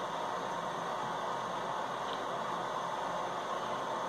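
Steady room noise, an even hiss like an air conditioner or fan running, with one faint click about two seconds in.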